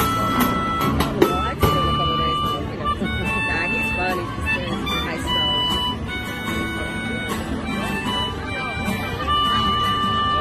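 An acoustic ensemble of several acoustic guitars and a resonator guitar playing a slow song together, strummed chords under sustained high lead notes.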